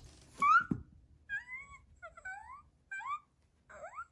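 Cartoonish mouse squeaks: a quick series of short, high-pitched rising chirps in small clusters. The loudest comes about half a second in.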